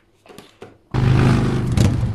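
A loud transition sound effect for a title card: a noisy rush over a steady low hum, starting suddenly about a second in after a few faint clicks.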